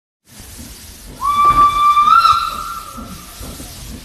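A steam locomotive's whistle gives one blast of about two seconds, starting just over a second in, its pitch stepping up slightly midway before it fades. It sounds over the steady running noise of the train.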